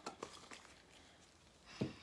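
A few light clicks and knocks of a small plastic mica jar and its lid being handled and set down on a table, all within the first half second.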